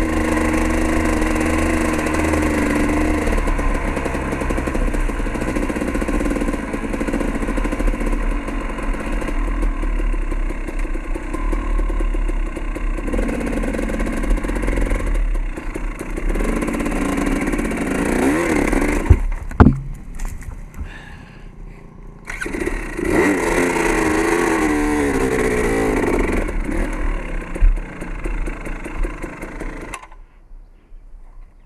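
Dirt bike engine running as the bike is ridden along a trail, its pitch shifting with throttle and speed. About two-thirds through, a couple of sharp knocks come and the engine drops back low for a couple of seconds, then revs up again with a wavering pitch.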